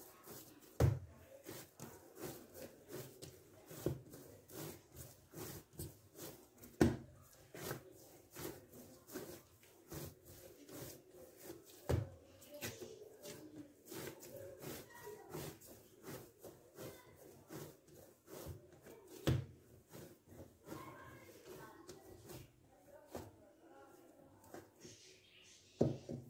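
Brioche yeast dough being kneaded by hand on a hard tiled counter: irregular soft thumps and slaps as it is pressed, folded and pushed, about once or twice a second, a few louder than the rest.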